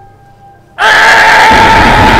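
A film sound effect: a sudden, very loud sustained tone over a rushing hiss, starting just under a second in and holding steady.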